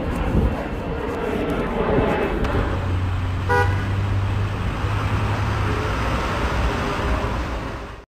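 Street traffic ambience with a steady low rumble, broken by one short car-horn toot about three and a half seconds in.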